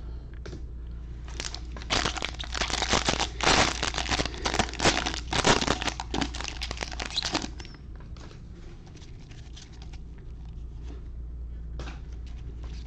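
Trading-card pack wrapper crinkling as a football card fat pack is torn open and the cards pulled out. The crinkling is loud and busy for about six seconds, starting a second or so in.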